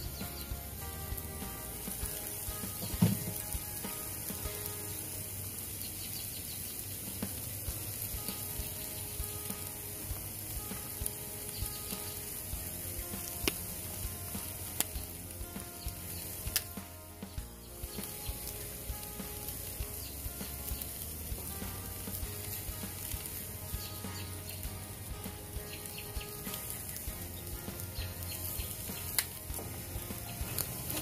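Raw steaks sizzling on the grates of a small charcoal grill: a steady frying hiss with small crackles and pops of fat throughout, and a single louder knock about three seconds in, all under faint background music.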